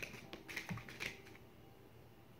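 Tarot cards being shuffled by hand: a quick run of light card taps and flicks over about the first second.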